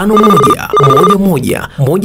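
A telephone ringing twice, two short rings in quick succession, mixed under a voice reading out a phone number.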